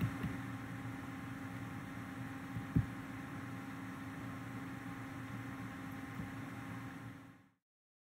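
Faint steady electrical hum of background noise, with one short low thump about three seconds in; the sound cuts off to dead silence just before the end.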